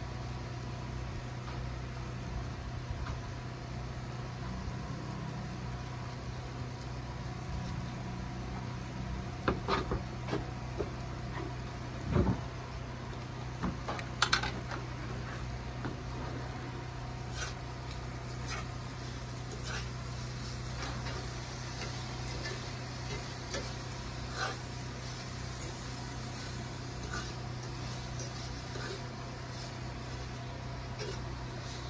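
Liquid-fuel two-burner camp stove burning with a steady low hum. A few sharp knocks and clinks of a fork against the skillet come around the middle, followed by lighter scattered ticks.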